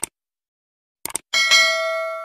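Sound effects of a subscribe-button animation: a short click, a quick double click about a second in, then a bell ding of several steady tones that rings for about a second and cuts off suddenly.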